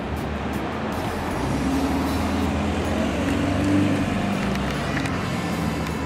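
Road traffic noise: a steady low engine hum and tyre hiss, swelling as a vehicle goes by in the middle and easing off again.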